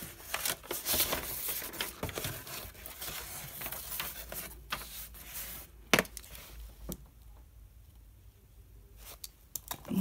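Foam core board and paper being handled and slid over a cardboard cutting mat: irregular scraping, crinkling and tapping, with one sharp knock about six seconds in as a plastic ruler is laid on the board. The last few seconds are quieter, with a few light clicks.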